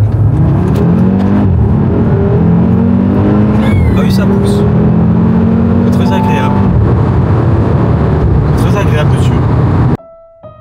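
2023 Audi RS3's turbocharged five-cylinder engine accelerating hard through the gears, heard from inside the cabin: the engine note climbs in pitch, drops at each upshift and climbs again, then holds steady for a few seconds.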